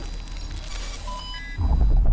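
Electronic logo-intro sound effect: a noisy rush with a few short, clean digital beeps of different pitches about a second in, then a deep bass rumble swelling in at about one and a half seconds and becoming the loudest part.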